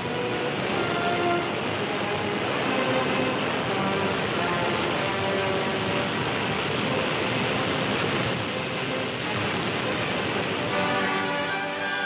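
Steady rumble and clatter of tanks on the move, engines and tracks together, with faint held tones of music underneath.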